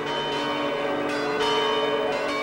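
A large bell ringing, struck a few times, its deep tones ringing on between strikes.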